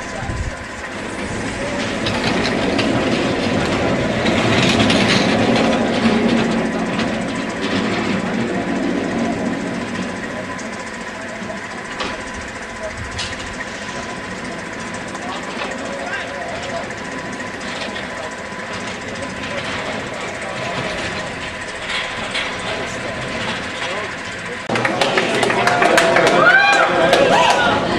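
Small steel coaster's train running along its track, with people's voices around it; the voices get louder near the end as a car of riders rolls in.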